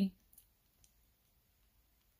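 Near silence with a few faint, short clicks, a light handling sound.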